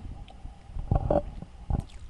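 Short breaths and small mouth noises close to a handheld microphone during a pause in speaking: a couple of brief sounds about a second in and another near the end.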